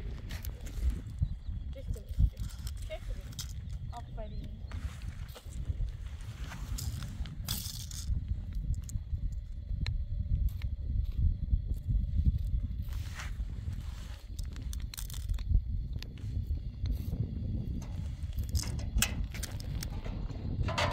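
Wind buffeting the microphone as a steady, uneven low rumble. Over it come a small child's short voice sounds near the start and scattered light clicks and scrapes of a plastic spoon and cup in gravelly sand.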